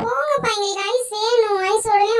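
A high, child-like voice in one long, drawn-out, wavering whine without words.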